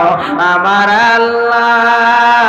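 A man's voice chanting a sermon in a sung, melodic style into a microphone, holding long wavering notes, with a brief break for breath just after the start.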